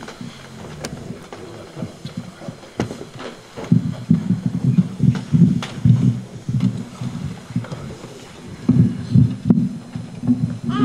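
A muffled voice speaking in short phrases, mostly deep and low, with a few light knocks in the first few seconds.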